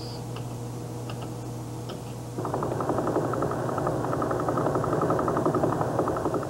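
Pulsar radio signal from the Arecibo radio telescope's receiver played as sound. A low steady hum and hiss comes first. About two and a half seconds in, a louder rapid, even train of ticks in noise starts, the pulsar's pulses.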